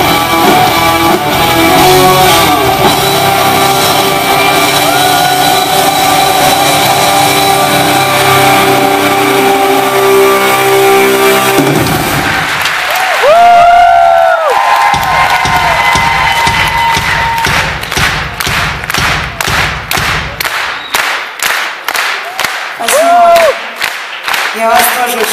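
A live rock band with electric guitar and drums plays the last bars of a song, which stops suddenly about halfway through. The audience then claps and cheers, with shrill whistles, and the clapping settles into an even beat toward the end.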